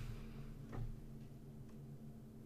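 Quiet room tone with a steady low electrical hum, and a faint click or two from a computer mouse.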